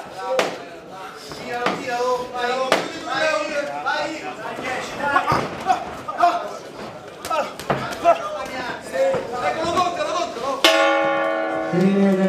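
Shouting from ringside and sharp thuds of punches and bodies against the ropes, then about 11 s in a boxing ring bell sounds with a sudden, sustained, steady ring: the signal that ends the round.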